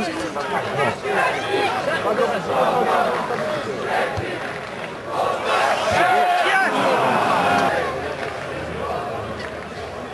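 Several men shouting and calling out over one another at an amateur football match, loudest about six to seven seconds in.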